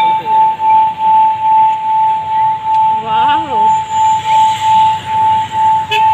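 Metal singing bowl rubbed around its rim with a wooden stick, singing one steady ringing tone that swells and fades about twice a second as the stick circles.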